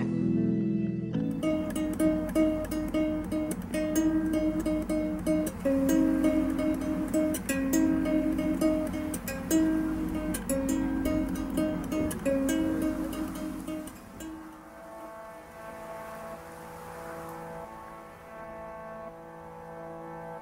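Instrumental soundtrack music: plucked strings with repeated strokes over held notes, dropping to softer, sustained tones about two-thirds of the way through.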